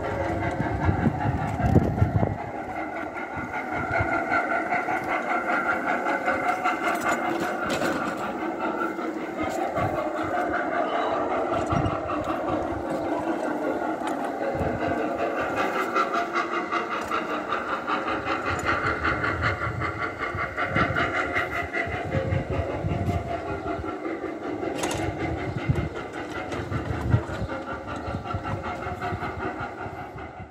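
Steampunk pram built as a miniature steam locomotive, pushed over brick paving: a steady mechanical rumble with fine rapid clatter from its spoked wheels and gear work, and a few louder knocks.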